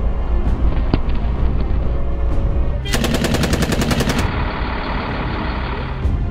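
A burst of automatic gunfire about three seconds in: rapid, evenly spaced shots, roughly ten a second, lasting just over a second. It sits over a steady low rumble.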